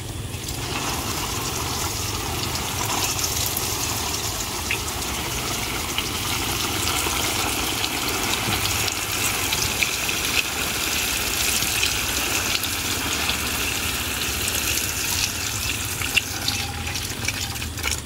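Water sprinkling steadily from the rose of a plastic watering can onto the leaves of young seedlings.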